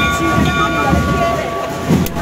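A bell struck once, ringing with a clear metallic chord for about a second and a half over crowd murmur: the throne bell of a Málaga procession, rung as a signal to the bearers.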